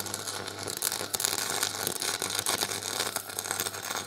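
MIG welding arc crackling steadily as a bead is laid with a Clarke MIG welder, over a low steady hum.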